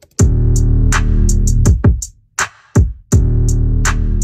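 Hip-hop drum-machine beat at 164 BPM played back loud: claps, kicks and hi-hats under a heavy 808 bass. The bass plays two long held notes of about a second and a half each, with a gap between them.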